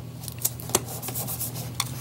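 A strip of clear adhesive tape being pressed and rubbed down onto construction paper with the fingers, a soft rubbing rustle broken by a few light clicks.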